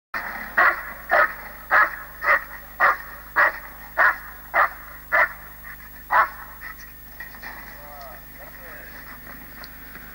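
A dog barking in a steady series: about ten loud barks, a little under two a second, stopping a little after six seconds in.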